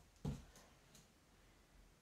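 Near silence: room tone, with one short soft thump about a quarter of a second in as a body shifts its weight on a foam floor mat.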